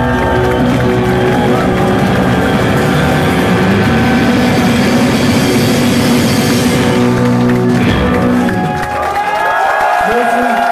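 Instrumental math rock band playing loud: electric guitars, bass and drums ringing out on sustained chords. The band stops near the end and the audience starts cheering.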